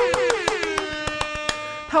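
Hands clapping in a quick, even run of claps, answering a call for applause. Under the claps is a long drawn-out pitched sound that falls, then holds steady from about halfway through.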